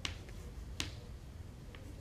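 Chalk tapping on a blackboard while writing: two sharp clicks about a second apart over faint room hum.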